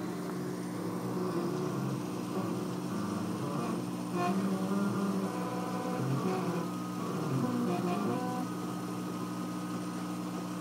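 40-watt CO2 laser cutter running a vector cut: a steady hum from its exhaust blower, air-assist compressor and water pump, with the laser head's motors whining in tones that shift pitch every second or so as the head traces the outline.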